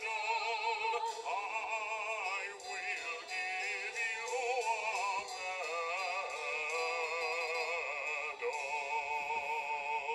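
Singing with strong, wavering vibrato over musical accompaniment, heard through a television's speaker, thin and without bass.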